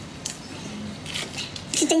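Shrimp shell being cracked and pulled apart by gloved hands: a sharp click about a quarter second in, then faint crackling. A woman's voice comes in near the end.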